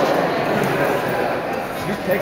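Indistinct background talk from several people in a large gymnasium, with no clear words.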